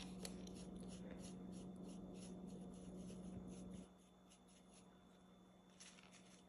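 Faint, quick strokes of a small paintbrush brushing across a styrofoam plate, about three or four a second, as dissolved Skittles dye is mixed. The strokes stop about two-thirds of the way in, and near silence follows.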